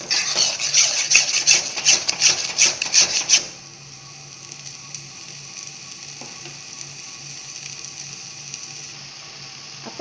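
A spatula scrapes and stirs a thick egg-noodle and vegetable mixture in a nonstick pan, with quick strokes about three a second. About three and a half seconds in the scraping stops, leaving a steady soft hiss of the food frying.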